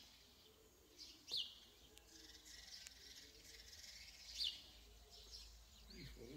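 A small songbird calling with two short, high chirps that sweep downward, about three seconds apart, and fainter chirps between them.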